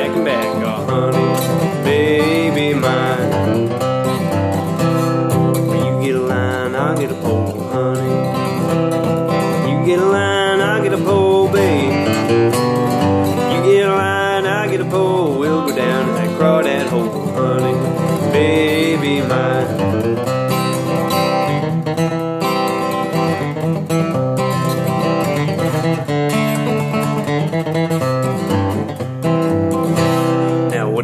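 Martin D-35 dreadnought acoustic guitar picked solo in a bluegrass style, an instrumental break between verses, running steadily throughout.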